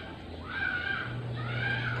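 An animal calling faintly twice, each call arching up and down in pitch, over a faint low hum.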